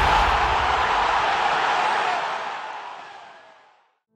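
Logo-sting sound effect: a low thump followed by a loud rushing noise that fades away to silence over about three and a half seconds.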